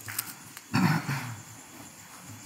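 A faint click, then about a second in a brief loud low rustle and thump close to the microphone, made by monks moving on their floor mats as they kneel and bow.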